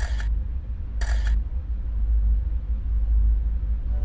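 A steady low rumble, with two short bursts of hiss: one at the start and one about a second later.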